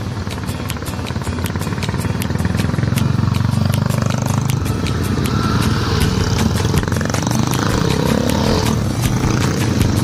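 Motorcycle engines growing louder about three seconds in as several bikes pass close by one after another, over background music with a steady beat.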